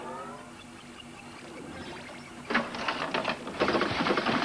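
Pinball machine in play: a fast, dense clattering from its mechanism starts about two and a half seconds in, after a rising sweep of tones fades out at the start.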